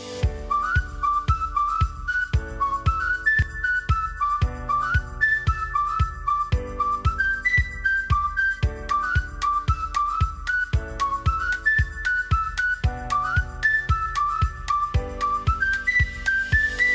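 Upbeat background music: a bright, whistle-like melody with little pitch slides over piano chords and a steady beat with claps, about two beats a second.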